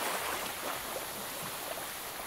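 Steady wash of water noise with small irregular splashes, like open water or a boat's wake.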